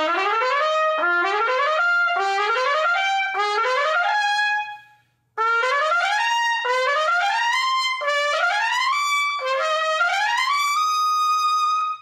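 Lotus Universal Bb trumpet (yellow brass bell stem, phosphor bronze flare, heavyweight valve tops fitted) playing quick rising runs, each starting a little higher than the last. The runs come in two phrases with a short break about five seconds in, and the second phrase climbs to a held high note at the end. The player hears the heavy valve tops as making the sound heavier and more focused.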